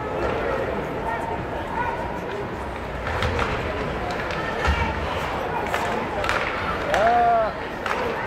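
Ice hockey game heard from the stands: steady crowd chatter, with sharp clacks of sticks and puck on the ice and boards. A voice calls out about seven seconds in.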